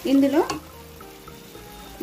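A brief spoken word, then chicken in thick masala gravy sizzling softly in a non-stick kadai as it is stirred with a spatula.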